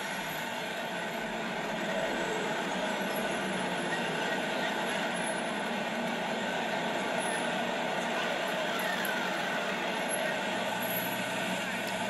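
Steady rushing noise, like traffic or city ambience, from a documentary soundtrack played back through a tablet's speaker.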